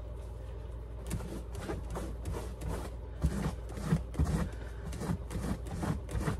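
Wet washcloth scrubbing a leather purse: irregular rubbing and rustling strokes with a few soft bumps, over a steady low background hum.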